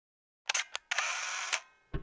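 Camera shutter sound effect: a quick double click about half a second in, then a brief winding noise like film advancing, with single clicks as it ends and again just before the end.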